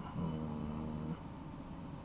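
A man's short closed-mouth "mmm" hum while thinking, held on one low, steady pitch for about a second.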